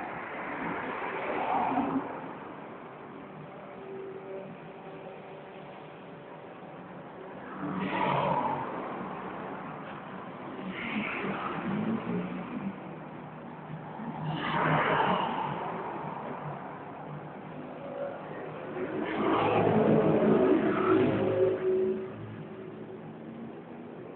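Motor vehicle engines running, with about five swells in engine sound that rise and fade over a steady low hum, the longest and loudest near the end.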